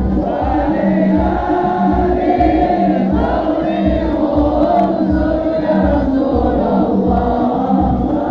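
A large crowd of men singing devotional sholawat together in unison, loud and continuous, with low pulses underneath.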